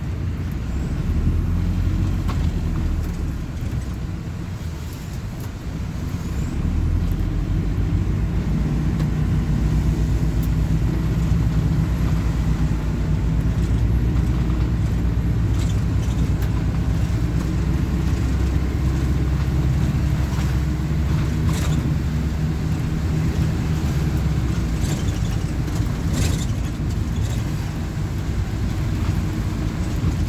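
Plaxton Beaver 2 minibus's diesel engine running as the bus drives along, heard from inside the saloon together with road and tyre noise. The engine rumble eases briefly about five seconds in, then rises again and holds steady. Occasional light clicks and rattles come from the interior.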